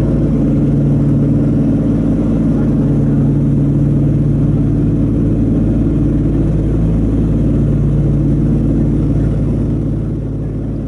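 The Wright R-3350 radial piston engines of a Lockheed L-1049 Super Constellation running steadily in flight, a loud, even, low drone that eases slightly near the end.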